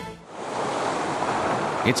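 Ocean surf breaking and washing on the shore: a steady rushing noise that fades in over the first half-second.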